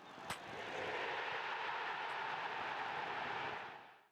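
Steady rushing noise effect for an animated outro graphic. It fades in with a short click just after the start, holds evenly, and fades away near the end.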